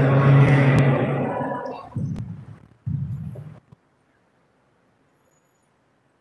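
A man's voice chanting a liturgical prayer on one held note through the church sound system; the note fades out about two seconds in. Two short chanted phrases follow, then the sound cuts off into silence.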